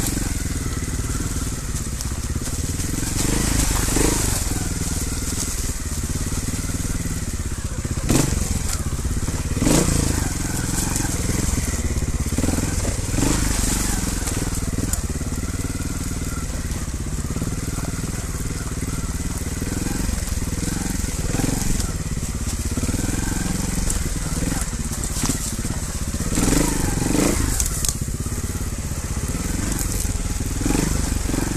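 Trials motorcycle engine running steadily at low speed over rough rocky ground. Stones crunch and knock under the tyres every few seconds.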